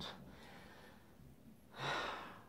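A woman's audible breathing in a pause between slow spoken phrases, with a breathy intake near the end just before she speaks again.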